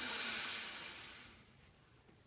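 One forceful breath during Tummo breathing: a loud rush of air that starts suddenly and fades out over about a second and a half.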